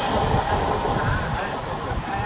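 Tail end of an Indian Railways goods train rolling past on the adjacent track, its wagon and brake-van wheels clattering irregularly over the rails. The rumble eases slightly as the train draws away.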